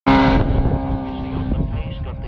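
Superstock racing motorcycle passing at racing speed: its engine note starts suddenly and loud, holds steady, and fades after about a second and a half.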